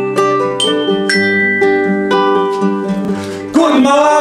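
Small toy metallophone struck with a mallet, ringing melody notes about two a second over strummed acoustic guitars. About three and a half seconds in, the band comes in singing together and the music gets louder.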